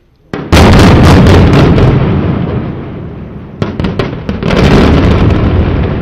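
Explosive demolition of high-rise apartment towers: a rapid string of blasting charges cracks about half a second in, then a heavy rumble. A second string of cracks comes about three and a half seconds in, and the rumble runs on under it.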